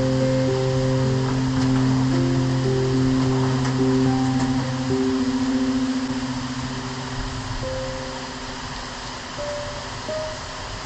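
Soft, slow music of long held notes over the steady hiss of rain falling in a forest. The music thins out and grows quieter in the second half.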